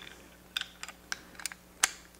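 A few sharp, irregular metal clicks, about five in all, from a torque wrench being handled and set up to torque an AR-15 castle nut.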